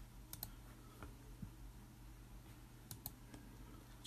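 A few faint, scattered computer clicks, two of them in quick pairs near the start and about three seconds in, over a low steady hum.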